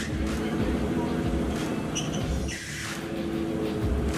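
Vintage open fire engine running as it pulls away, a steady low engine note over background music.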